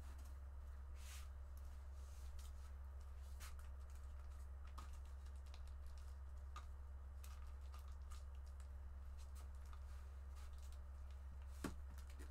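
Light, irregular clicks of typing on a computer keyboard over a low, steady electrical hum.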